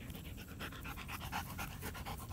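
German Shepherd panting quickly and steadily, several breaths a second.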